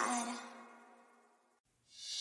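Background music dying away to near silence in the first part, then a new track swelling up just before the end.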